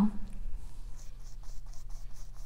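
Paintbrush brushing paint onto a canvas bag: a few soft, scratchy strokes on the fabric, clearest in the second half.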